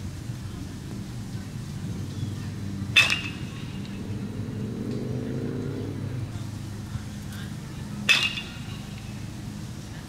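Two sharp, ringing pings about five seconds apart: a metal bat hitting a baseball. A steady low hum runs underneath.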